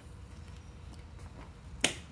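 Quiet outdoor background with one short, sharp click near the end, preceded by a fainter click.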